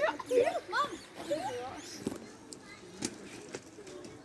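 Laughter for about the first second and a half, then quiet outdoor background with a couple of sharp clicks.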